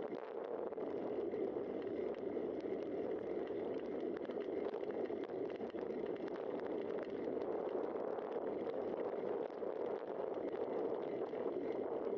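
Bicycle riding on an asphalt road, heard from the bike's own camera: a steady rushing, rolling noise with faint rapid ticks and rattles.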